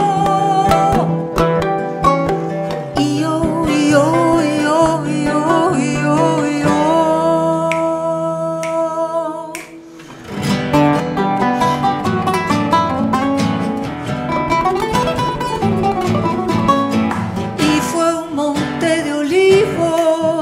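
Charango and nylon-string acoustic guitar playing an instrumental passage of an Andean-flavoured song. About ten seconds in the held notes give way to a brief near-pause, then both come back with fast, rhythmic strumming.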